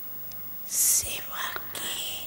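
Soft whispered speech close to the microphone, opening about two-thirds of a second in with a loud hissing sibilant and trailing off into a few breathy syllables.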